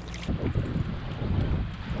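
Wind buffeting the microphone in uneven low gusts, with water splashing at the surface beside an inflatable raft.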